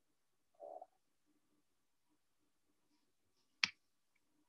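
Near silence, broken by a faint brief low sound a little over half a second in and a single sharp click near the end.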